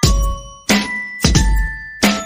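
Background music: bell-like struck notes starting about every two-thirds of a second, each with a deep bass thump under it.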